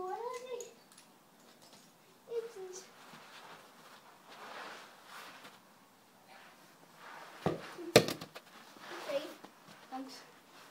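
Two sharp thuds close to the microphone about seven and a half and eight seconds in, a football landing and being stopped beside the phone, amid faint voices.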